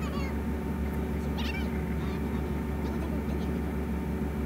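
Cartoon episode soundtrack playing back: short, high, wavering voice-like cries, one at the start and one about a second and a half in, over a steady low hum.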